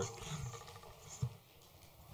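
Quiet room tone with a faint low sound fading out at the start and a single soft knock just over a second in.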